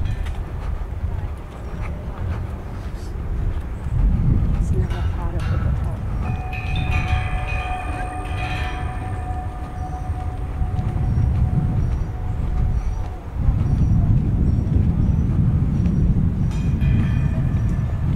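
Steady low rumble of wind buffeting the microphone. Passers-by talk briefly in the middle.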